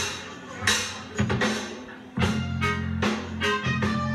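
Live ska band starting a number: a few separate ringing hits on the drum kit in the first two seconds, then about two seconds in the full band comes in with bass, drums and guitar.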